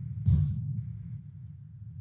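Low steady rumble of background noise on the remote speaker's microphone line, with one short hissy burst about a third of a second in.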